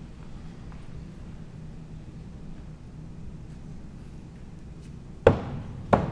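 Thrown axes striking wooden plank targets. The first hit is a sharp, loud knock with a short ringing tail about five seconds in, and a second, softer knock follows well under a second later, over a low steady hum.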